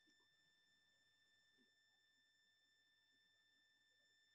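Near silence, with only a very faint steady high-pitched electronic tone in the background.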